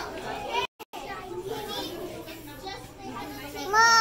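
Children and adults talking in the background, with a brief total dropout of the sound just under a second in and a child's high voice coming in loudly near the end.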